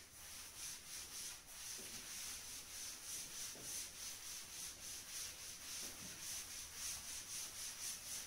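Cloth duster rubbing chalk writing off a chalkboard. The wiping comes in quick, even back-and-forth strokes, about two or three a second, and is faint.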